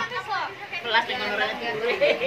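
Several voices chattering over one another, women's and children's among them: a family group talking at once.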